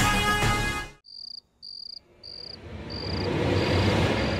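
Theme music cuts off about a second in, followed by crickets chirping in short, evenly spaced chirps, about five in three seconds, as a night-time ambience. A broad background noise swells up beneath the chirps toward the end.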